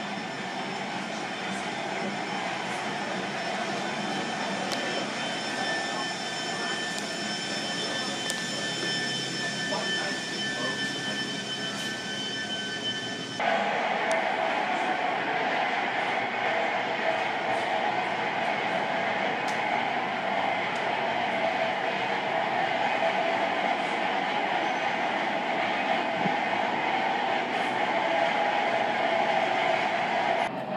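Steady machinery drone inside a steamship, with faint steady tones over it. About 13 seconds in it jumps abruptly to a louder, fuller drone.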